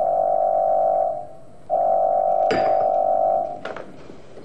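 Corded telephone ringing with a steady electronic tone, twice: a short ring, a brief gap, then a longer ring with a sharp click partway through it. The ringing cuts off near the end as the call is picked up.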